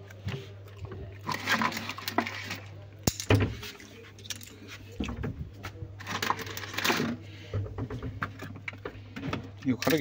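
Kitchen utensils and containers being shifted about on a cupboard shelf: scattered knocks and clinks of steel and plastic, with two longer stretches of rustling, over a low steady hum.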